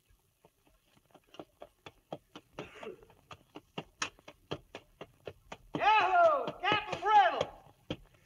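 Radio-drama sound effect of a horse's hoofbeats, about four strikes a second, starting faint and growing louder as the rider approaches. About six seconds in, a man's voice calls out loudly over the hoofbeats.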